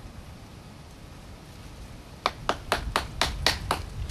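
Turley Model 23 Snake Eater knife working wood to split kindling: a run of about seven quick, sharp knocks, roughly four a second, starting a little past halfway.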